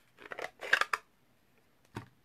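Plastic ink pad case being handled: a quick run of small clicks and scrapes in the first second, then one sharp click near the end.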